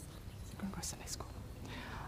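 Faint hushed voices and whispering over a low steady room hum, with a few soft hissing sounds about a second in.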